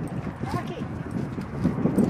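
Indistinct chatter of several people's voices, overlapping, with scattered light clicks.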